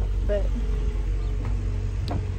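A steady low mechanical rumble with a faint steady hum above it, with a single brief spoken word early on.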